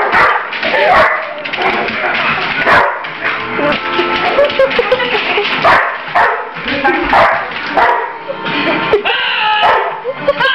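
A dog barking and yipping during play, several short sharp barks spread through, over television sound with music and voices.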